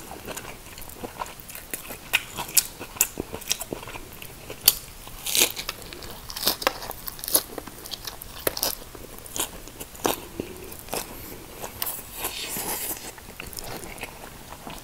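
Close-miked biting and chewing of a fresh rice-paper shrimp spring roll dipped in sauce. Irregular crisp crunches, several a second, come from the lettuce inside.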